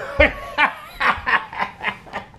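A man laughing in short, repeated bursts, about three a second.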